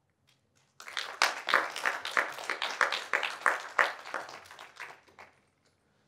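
Audience applauding: many hands clapping, starting about a second in and dying away after about four seconds.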